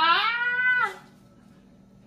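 A woman's high-pitched squeal of delight, rising in pitch and held for about a second before it stops.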